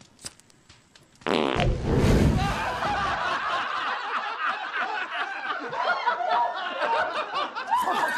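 A fart sound effect starting suddenly about a second in and lasting a couple of seconds, followed by a crowd laughing, a laugh track, that carries on steadily.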